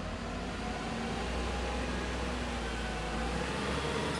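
Sound effect of vehicles driving up: a steady low engine-and-road rumble that grows a little louder over the first second, then holds.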